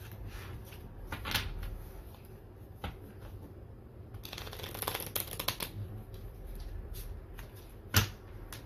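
A deck of tarot cards being shuffled by hand: cards sliding and flicking against each other in short flurries, busiest around the middle, with one sharp snap of the cards at the very end.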